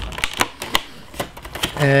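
Clear plastic blister package being handled and pried open by hand: a handful of sharp, separate plastic clicks and crackles.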